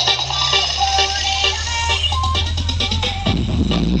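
Loud electronic dance music played through a large carnival sound system: a heavy steady bass, a synth melody over a regular beat, and a rising sweep near the end.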